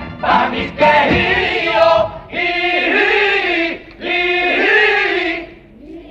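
Male comparsa chorus of the Cádiz carnival singing a song in harmony. The sung phrases break off briefly about two and four seconds in, and the voices drop away near the end.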